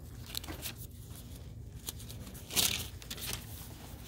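Thin paper rustling as Bible pages are turned: a few soft swishes, the loudest about two and a half seconds in, over a low steady room hum.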